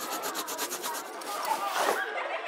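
Crayons scribbling on paper: rapid, scratchy back-and-forth strokes, about ten a second.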